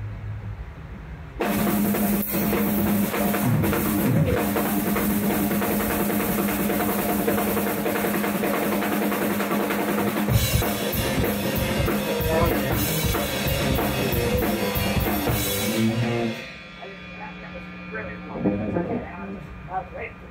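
Rock band jamming in a small rehearsal room: a drum kit with bass drum, snare and cymbals, played along with amplified electric guitars holding a ringing note. It kicks in about a second and a half in, gets busier with heavier cymbals about ten seconds in, and stops abruptly about sixteen seconds in. After that an amp note rings on quietly with a few scattered drum hits.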